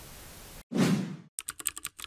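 A whoosh sound effect, then a fast run of keyboard-typing clicks, about eight in under a second, as text types out. The whoosh is the loudest part.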